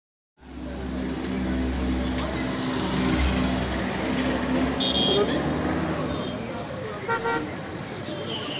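Street traffic noise: a vehicle engine running with a low rumble, a short high horn toot about five seconds in, and a man's voice.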